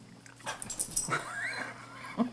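A Saluki whining during play, one call that rises and falls in pitch, after a few short clicks.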